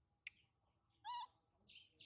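Faint bird calls: a brief sharp chirp, a short pitched call about a second in, then near the end a run of repeated falling high notes, about three a second.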